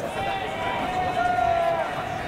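Baseball players' shouted calls during fielding practice: young men's voices holding long, drawn-out cries across the field, several overlapping.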